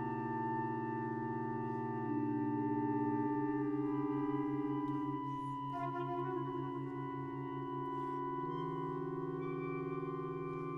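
Contemporary ensemble music made of long, overlapping held notes. The chord shifts slowly as single notes enter and drop out, and the lowest notes pulse steadily through the middle.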